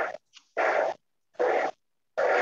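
A dog barking over and over, about one bark every 0.8 seconds, heard through a video-call microphone that cuts to silence between barks.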